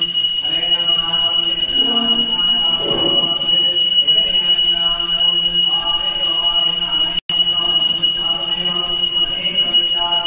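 Group devotional chanting with a steady, high-pitched electronic buzzing tone held over it; the sound cuts out for an instant about seven seconds in.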